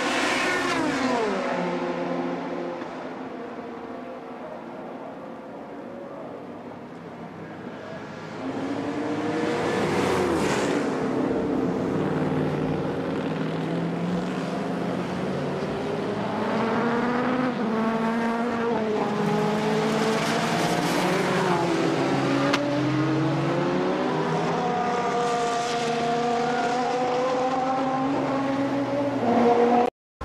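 Racing car engines at high revs passing by one after another, each engine note sliding up and down in pitch as the cars go past. The sound is quieter from about three to eight seconds in, then louder again for the rest.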